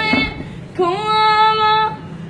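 A high voice singing a devotional song: after a short break it holds one long, steady note, over a steady low hum.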